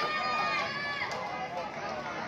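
Several spectators' voices at once, shouting and cheering with long held calls over the stadium crowd's background noise.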